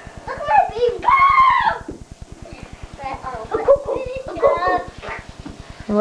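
Young children's voices, high-pitched shouts and squeals in several bursts as they play, over a steady low buzz.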